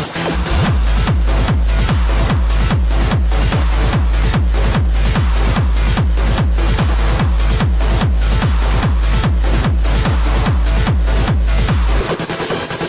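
Hard dance electronic track with a fast, steady four-on-the-floor kick drum under dense synths. The kick comes back in just after the start, following a brief drop.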